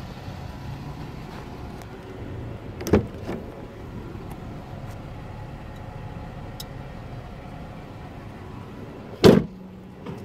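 Jeep Wrangler rear swing gate being worked: a knock about three seconds in as it opens, then a loud slam as it shuts near the end, over a steady low rumble.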